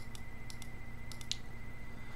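Several faint, short clicks of a computer mouse over a steady low electrical hum and a thin steady high tone.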